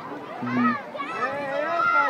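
Children's voices: high-pitched calls and chatter of several kids at play, loudest near the end.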